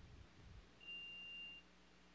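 A single short electronic beep: one steady high tone lasting under a second, starting about a second in, heard faintly over room tone.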